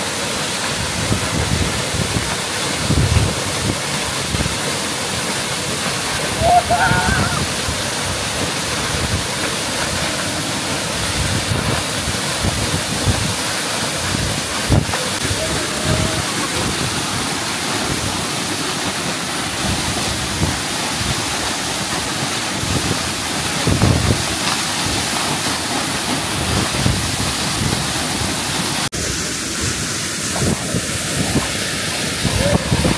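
Waterfall pouring into a rock pool: a steady rush of falling water.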